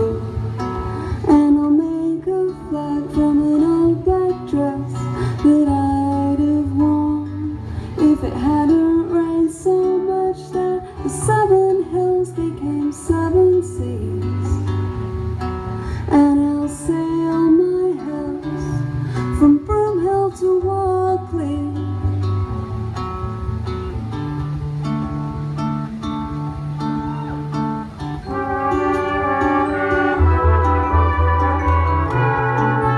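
Live band music: a strummed acoustic guitar with a woman singing over it. A fuller band accompaniment swells in near the end.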